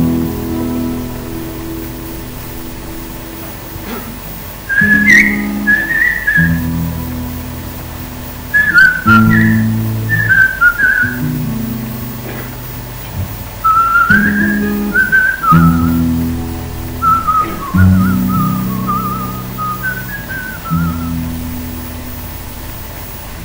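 Instrumental song intro: acoustic guitar chords strummed in a slow rhythm, with a whistled melody joining about five seconds in and wandering over the chords.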